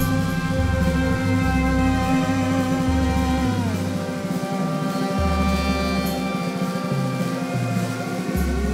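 Live band playing an instrumental passage of a rock song with no vocals: held chords over a bass line stepping from note to note, with one held note sliding down in pitch about three and a half seconds in.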